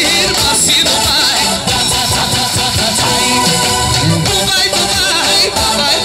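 Live band dance music played loud through PA speakers, with a wavering, ornamented melody line over the accompaniment and some singing.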